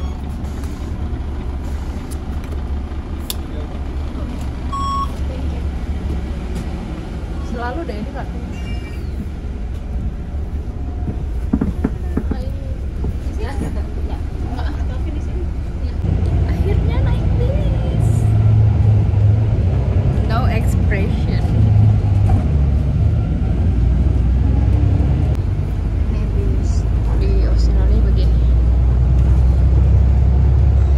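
City bus engine and running gear heard from inside the passenger cabin, a steady low rumble that gets louder from about halfway through as the bus drives on. Quiet voices of other passengers and a short electronic beep about five seconds in.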